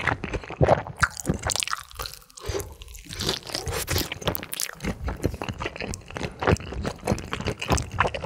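Close-miked biting and chewing of a sauced rice-cake-and-sausage skewer (sotteok-sotteok), dense crunches and wet squishes, easing off briefly about two seconds in before the chewing picks up again.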